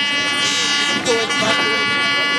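An air horn held in one long steady blast at an unchanging pitch, with people shouting and cheering over it.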